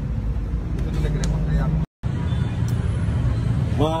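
Steady low rumble with faint voices under it, broken by a brief moment of dead silence about two seconds in where the recording cuts from one clip to the next.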